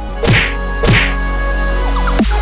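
Two heavy trailer-style impact hits, each a sharp crack dropping into a deep boom, about half a second apart, over a low sustained drone.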